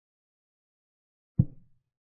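A single short knock, the move sound effect of a chess board animation as the black knight is placed, near the end; otherwise silence.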